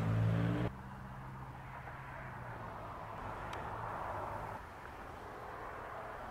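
A steady low engine hum cuts off abruptly less than a second in. It gives way to quieter outdoor road-traffic noise that swells and then eases off about four and a half seconds in.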